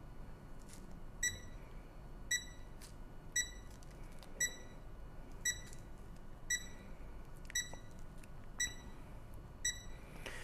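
Handheld formaldehyde and TVOC air-quality meter sounding its over-limit alarm: nine short high beeps, evenly spaced about once a second. The alarm is set off by vapour from the orange being peeled beside it, which drives the meter's TVOC and formaldehyde readings over the limit.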